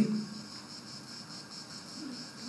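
Pause in a man's speech: quiet room tone with a faint, steady high-pitched tone in the background.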